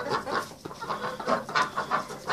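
A brown hen clucking, a run of short clucks several times a second, while held in someone's arms.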